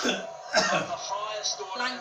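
Voices talking: television cricket commentary mixed with people talking in the room, picked up through the air from the TV set.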